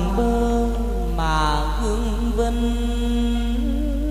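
Chầu văn (hát văn) ritual music: a male voice draws out long, slowly bending notes without distinct words over sustained accompaniment, with a falling slide a little after a second in.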